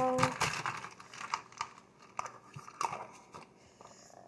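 Plastic tumbler with a straw and lid being handled: a run of irregular small clicks and crackles, busiest in the first two seconds and thinning out toward the end.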